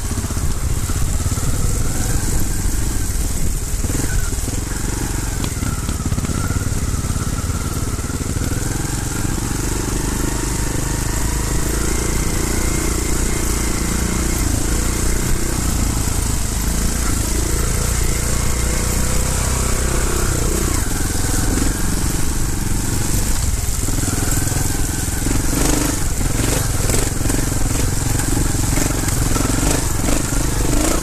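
Trials motorcycle engine running under load at low, changing revs while riding a rough, rocky trail. Several sharp knocks near the end come from the bike hitting the rough ground.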